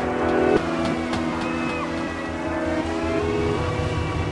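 Glitch-electronic music: sustained, layered tones over a dense low rumbling drone, with a few sharp clicks in the first second or so.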